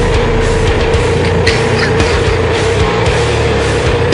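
Loud heavy metal music playing: a dense full-band sound with a steady held note throughout.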